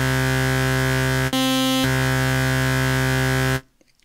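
Ableton Wavetable software synth holding a sustained note rich in harmonics: a saw-wave patch layered with a second oscillator an octave apart, detuned by a couple of cents, with the low-pass filter off. The tone changes briefly for about half a second just after a second in, and the note cuts off near the end.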